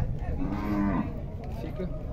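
A zebu cow in a cattle pen gives one short moo lasting about half a second, starting about half a second in.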